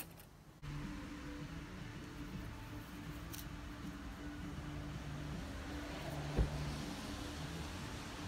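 A steady low hum with a faint held tone, and one dull knock about six and a half seconds in.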